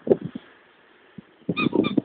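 Belgian Malinois barking: after a brief lull, a quick run of short, loud barks starts about one and a half seconds in.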